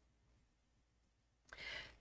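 Near silence, then a short, faint in-breath about one and a half seconds in, taken just before speaking.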